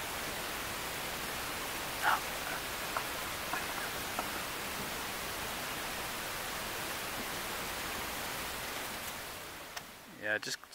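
Steady, even hiss with a short, faint higher-pitched sound about two seconds in. The hiss fades slightly near the end.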